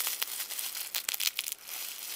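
Thin plastic wrapping crinkling in irregular crackles as hands handle it.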